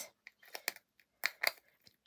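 A few light, scattered clicks and taps from craft supplies being handled on the desk.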